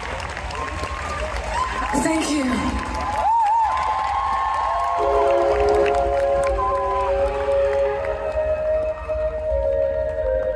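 Outdoor festival crowd cheering with whistles rising and falling in pitch. About halfway through, steady sustained chords start over the PA and carry on as the song's intro.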